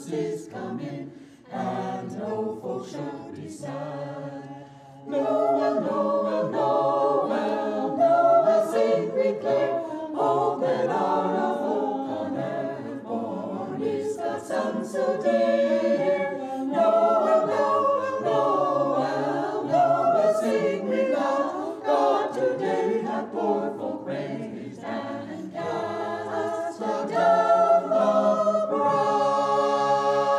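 Mixed choir of men's and women's voices singing a cappella. Softer for the first few seconds, the full choir comes in louder about five seconds in, and a chord is held near the end.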